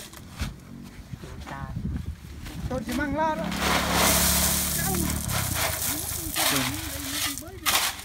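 Crushed stone tipped from a wheelbarrow into a dug-out hole at a bogged truck's rear wheel, pouring and rattling for about a second and a half near the middle.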